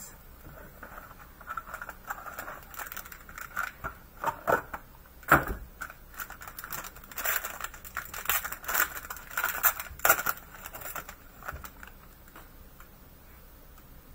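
Cardboard box and plastic pack wrapper handled and torn open: crinkling and rustling with scattered light clicks, and one sharp knock about five seconds in.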